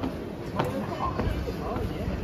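Footsteps on concrete stairs, with sharp steps near the start and just over half a second in, under people's voices.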